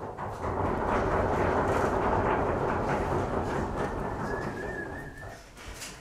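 Audience applauding, starting suddenly and dying away over about five seconds.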